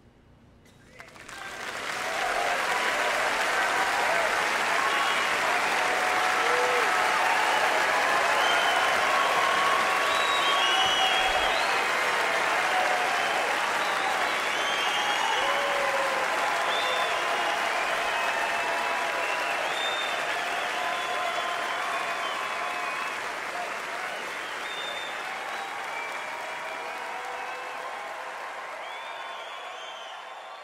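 Large concert audience applauding, with voices cheering and calling out through it. The applause swells in quickly about a second in after a brief hush, holds loud, then slowly eases off toward the end.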